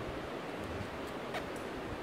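Steady low hiss of room tone in a hall, with one faint click about one and a half seconds in.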